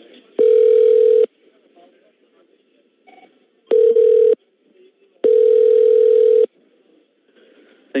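Three loud, steady electronic tones of one pitch on a telephone line: one about half a second in lasting under a second, a shorter one about four seconds in, and a longer one of over a second near six seconds.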